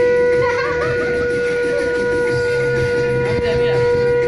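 Conch shell (shankha) blown in one long, steady, unbroken note, with people talking around it. In Bengali custom it is sounded as an auspicious welcome for the newlywed couple.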